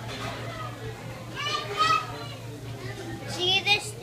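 A young boy talking in a high voice, in two short stretches about a second and a half in and again near the end, over a steady low hum.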